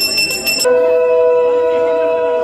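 A puja handbell rung rapidly, about eight strokes a second, with a bright high ring. About half a second in it cuts to a loud, steady ringing tone of several pitches that holds without a break.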